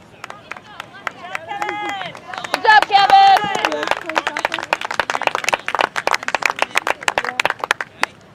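Sideline spectators at a youth soccer game shouting and cheering, loudest about two to three seconds in. This is followed by fast, steady hand clapping from about halfway through.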